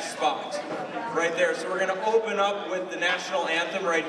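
A man speaking, making announcements to an audience.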